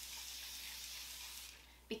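Aerosol can of Caudalie Grape Water spraying a face mist in one continuous hiss, tailing off near the end.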